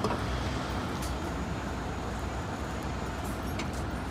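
Isuzu Erga city bus's diesel engine running with a steady low rumble as the bus pulls slowly away from its stop.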